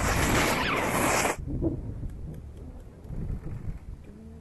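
Snowboard sliding and carving over packed snow, a loud hiss that stops suddenly about a second in, followed by a low rumble of wind on the microphone.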